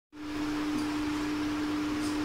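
Steady room noise: an even hiss with a constant hum underneath.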